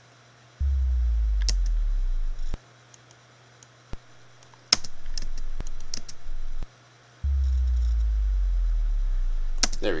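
Synthesized sine-wave bass drop from a tone generator plugin: a deep sub-bass tone that slides steadily down in pitch, heard twice, first for about two seconds, then again near the end for about two and a half seconds as it fades into the lowest notes. Sharp single clicks fall between the two playbacks.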